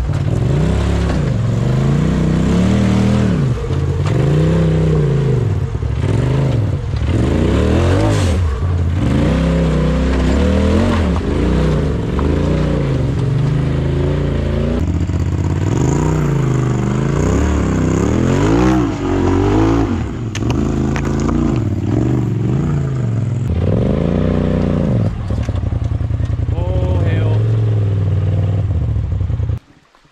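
Side-by-side UTV engines revving up and falling back again and again, a rise and fall every second or two, under load as the machines crawl up rock ledges. The sound changes to a second machine about halfway through.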